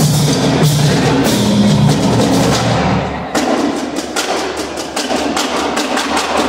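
Brazilian school marching band (banda marcial) playing. For about the first three seconds, percussion sounds over sustained low notes. Then the low notes drop out and the drum line of snare drums and bass drum carries on alone with rapid, regular strikes.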